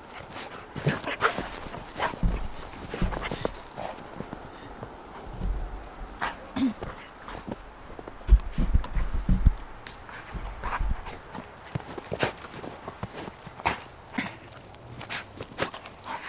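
Irregular crunching footfalls in fresh snow from a golden retriever running and playing, with a few low thumps.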